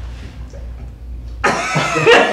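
A low steady room hum, then laughter breaks out suddenly about a second and a half in.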